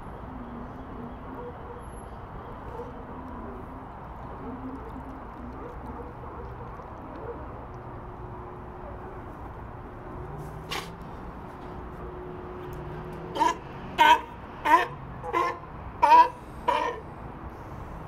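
California sea lion barking: six short, loud barks in quick succession, about one every two-thirds of a second, over a steady background hiss.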